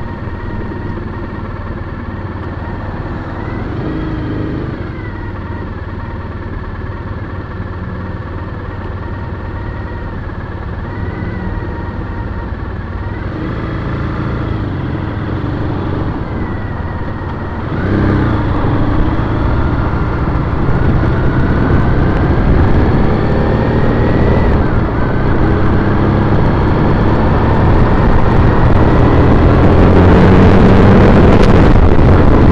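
2010 Triumph Bonneville T100's air-cooled parallel-twin engine idling in traffic, then, a little past halfway, pulling away and getting louder. Its pitch rises, dips once at a gear change, and rises again.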